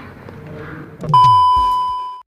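An electronic beep sound effect: a single loud, steady high beep about a second long, starting halfway through and fading gradually, with a low falling swoop underneath as it begins. Before it there is a faint room murmur.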